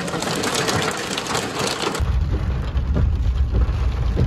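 Heavy rain drumming on a car's roof and windscreen, heard from inside the cabin. About halfway through it cuts abruptly to a low, steady rumble of the car's engine and road noise.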